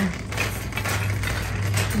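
Metal shopping cart rattling and clinking irregularly as it is pushed across the store floor, over a steady low hum.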